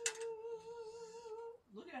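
A person humming one held, slightly wavering note for about a second and a half, opening with a brief sharp noise.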